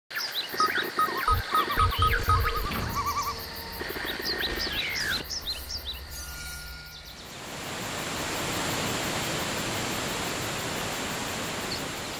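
Intro sound design for a logo sting: electronic music with many short bird-like chirps and a few deep bass hits. About seven seconds in it gives way to a steady rushing noise, like a waterfall.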